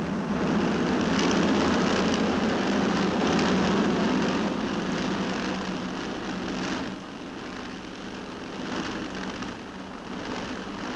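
Twin Rolls-Royce Merlin piston engines of a de Havilland Mosquito running at high power through a barrel roll, a steady drone that drops in level about seven seconds in.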